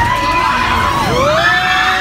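Drop-tower ride riders screaming together. Long held screams overlap, one falling away about a second in as another rises and holds.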